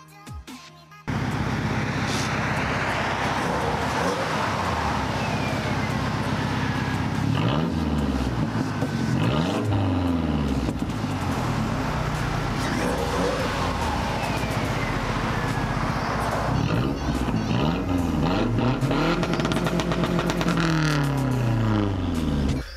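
Car engines revving at a stoplight. A steady engine drone cuts in suddenly about a second in, then from about seven seconds on the engines rev again and again, their pitch rising and falling.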